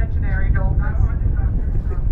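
Steady low rumble of a boat under way, mixed with wind on the microphone, and faint voices of other people talking in the background.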